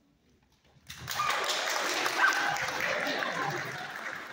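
Audience applauding and cheering, starting suddenly about a second in after a brief hush and easing off near the end.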